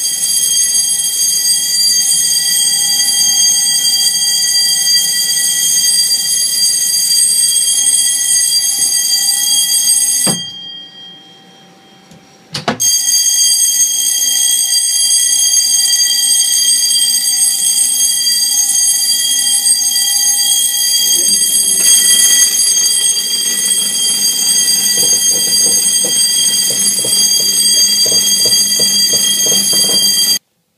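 Warning alarm of a ship's hydraulic watertight door sounding while the door is operated: a loud, steady, high-pitched alarm tone. It cuts out for about two seconds roughly a third of the way through, then resumes. A lower pulsing sound joins it in the last third.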